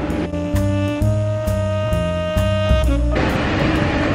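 A short burst of music with long held pitched notes over a low bass line, cutting in just after the start and stopping abruptly about three seconds in. After it, the steady rumble of the moving monorail car returns.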